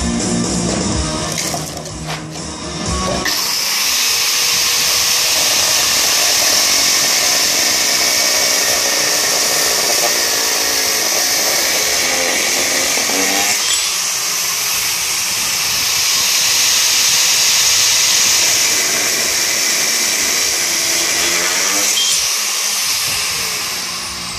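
Angle grinder cutting an aluminium flat bar, starting about three seconds in and running loud and steady, with a brief dip in the middle and tailing off near the end.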